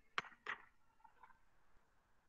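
Scissors snipping a piece of pulp egg carton: two sharp snips about a third of a second apart, followed by fainter rustling of the cardboard in the hands.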